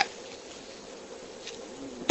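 Faint steady background hum and hiss, with a thin buzzing tone held at one pitch, in a pause between a man's sentences.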